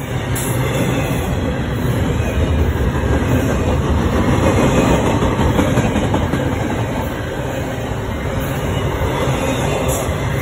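Double-stack container well cars of a passing freight train rolling by close at speed: a loud, continuous rumble and rattle of steel wheels on rail, swelling slightly midway.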